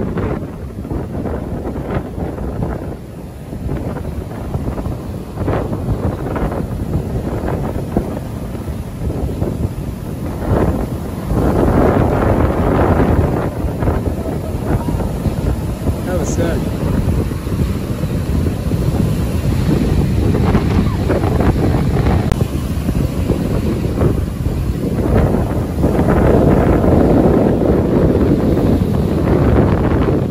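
Strong wind buffeting the microphone over breaking surf, a rough, steady rumble that swells louder about a third of the way in and again near the end.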